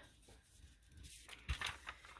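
Faint rustling of thin printed paper sheets being handled and laid on the table, with a soft thump about one and a half seconds in.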